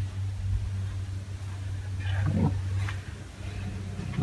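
A steady low-pitched hum, with a short louder sound about two seconds in.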